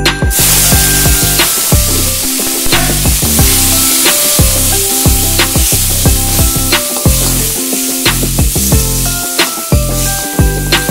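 Food frying in hot oil in a cooking pan: a loud, steady sizzle that breaks out suddenly right at the start and keeps on. Background music with a regular beat plays along with it.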